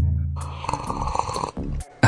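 A cartoon scene-change sound effect: a loud low tone that fades away over about a second, overlapped by a quieter rasping noise.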